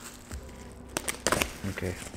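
Plastic parcel wrap crinkling and tearing as a small knife slices it open, with a few sharp crackles about a second in.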